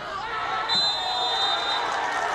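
Crowd of spectators shouting and cheering. A referee's whistle is blown once for about a second, starting just under a second in.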